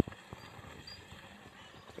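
Faint outdoor background noise with a few light, separate taps or knocks, one slightly sharper right at the start.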